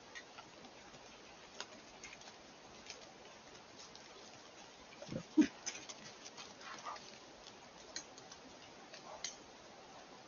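Wild boar moving through dry leaf litter and twigs close to the microphone: scattered small snaps and rustles, with one short low grunt about five seconds in as it passes the camera.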